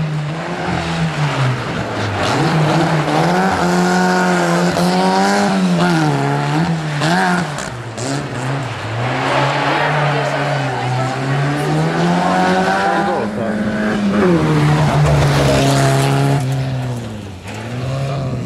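Škoda rally car's four-cylinder engine revving hard on a rally stage, its pitch climbing under throttle and dropping at each gear change or lift several times over.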